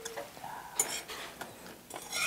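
Metal chopsticks lightly clicking and scraping against brass serving dishes as food is picked up, a few short scattered sounds.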